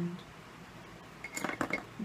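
A quick cluster of small hard clicks and clinks starting a little over a second in: a makeup brush and palette being handled and set down.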